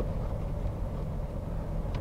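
Steady low rumble of a 2008 Toyota Tundra's 5.7-litre V8 idling, heard from inside the cab.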